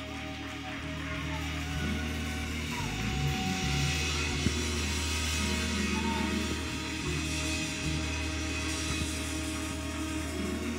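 Live gospel band playing, with sustained low bass notes under the music and a single sharp click about halfway through.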